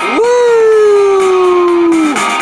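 A man's voice giving one long howling "woo", louder than the song around it, that swoops up at the start and then slides slowly down in pitch.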